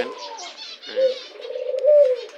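Doves cooing: a coo trails off at the start, and a long, steady coo begins about halfway through, lifting slightly in pitch near the end.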